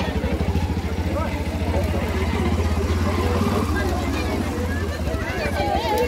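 A three-wheeled auto-rickshaw's small engine idling steadily with a fast, even pulse, under the chatter of voices in a busy market.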